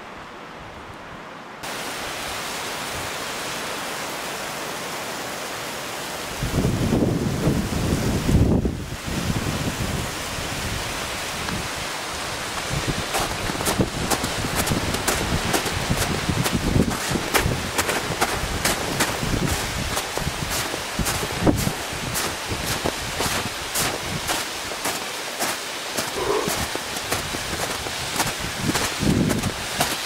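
Steady rushing of a small mountain waterfall. Wind buffets the microphone from about six to nine seconds in, and from about thirteen seconds in footsteps crunch in snow, several a second.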